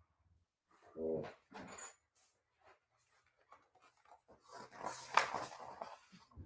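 A short whine about a second in, then a papery rustle in the last second and a half as a hardcover picture book's page is turned.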